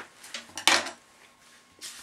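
Objects being handled and picked up. There is a sharp clatter about two-thirds of a second in, with smaller clicks before it, and a softer rustle near the end.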